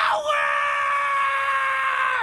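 A male anime character's long scream, held on one high, steady pitch.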